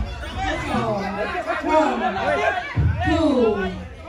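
Several people's voices talking over one another, with no clear single speaker.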